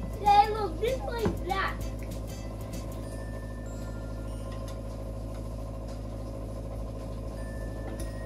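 Wire whisk stirring a mayonnaise-and-mustard mix in a stainless steel bowl, heard as faint scattered clicks and scrapes over a steady low hum. A child's voice sounds briefly in the first two seconds.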